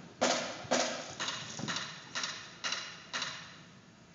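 A run of percussive drum hits in a reverberant gym, about two a second, each ringing on briefly and growing quieter until they die out near the end.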